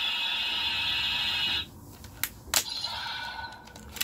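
Ultraman Decker transformation toy playing an electronic sound effect from its small speaker, which cuts off suddenly about one and a half seconds in. Two sharp plastic clicks follow as the toy is handled.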